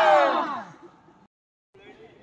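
The tail end of a long, loud yell from trainees holding the push-up position, its pitch falling as it fades out within the first second. The sound then cuts out briefly, and faint voices follow.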